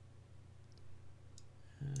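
A couple of faint computer mouse clicks over quiet room tone.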